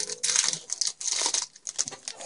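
Shiny foil wrapper of a Yu-Gi-Oh! Duelist Pack booster crinkling in the hands as it is being opened, in irregular crackly bursts.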